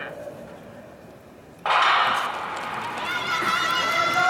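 Starting pistol for a 4x100 m relay fired once, about a second and a half in, as the loudest sound. Spectators then shout and cheer as the sprinters leave the blocks.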